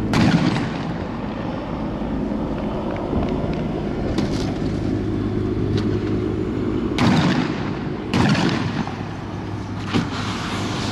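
A series of loud bangs over a steady vehicle engine hum: one right at the start, two about seven and eight seconds in, and a sharp one at the very end, with fainter cracks in between.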